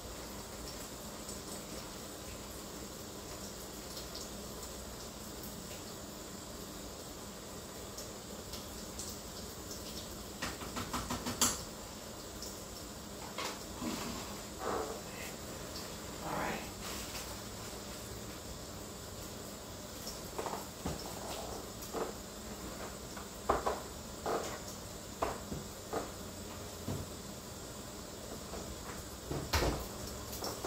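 A plastic food bag being handled, with scattered rustles and short clicks over a steady low hum, the loudest click about a third of the way through. A wooden cupboard door opens with a few knocks near the end.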